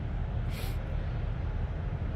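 Steady low vehicle rumble, with a brief hiss about half a second in.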